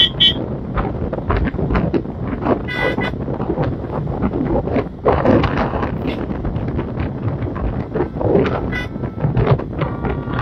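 Wind buffeting the microphone of a moving vehicle, with road and engine noise from the convoy and a few short car-horn toots: one at the start, one about three seconds in and one near the end.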